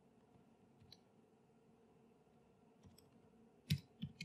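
Faint room tone with a couple of soft clicks, then one sharp click near the end: keystrokes on a computer keyboard as code is typed.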